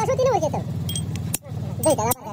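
A man's voice over a steady low engine-like hum, which cuts off abruptly about one and a half seconds in; more voice follows near the end.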